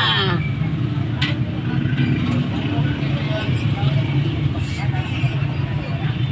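A motorcycle engine idling steadily with a low hum, with one sharp click about a second in, as at the opened fuel tank.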